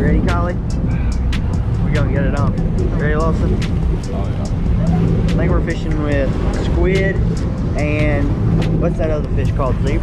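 Low, steady rumble of a boat's engine running, with people talking in the background.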